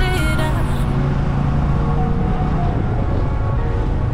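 Steady low rumble of a vehicle driving along a road, with sparse quiet tones of background music above it.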